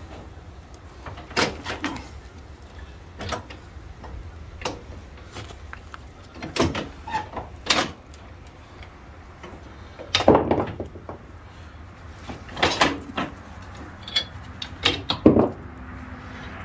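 Steel three-point hitch parts being pulled and worked by hand, giving a series of separate metallic knocks and clanks a second or two apart over a low steady hum. The loudest knock comes about ten seconds in.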